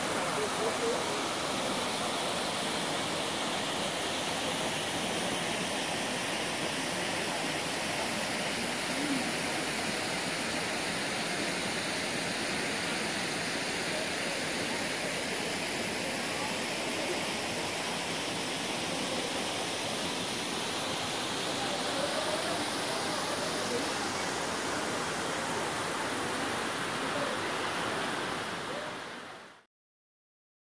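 Waterfall cascading over rock into a pool: a steady, unbroken rush of falling water that fades out near the end.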